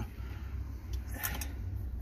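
Light handling noise from a nut driver tightening the screws on a starter motor's end cap, with a few short metallic clicks about a second in, over a low hum.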